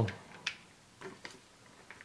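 One sharp click about half a second in, then a few faint ticks, as small objects are handled on a tabletop.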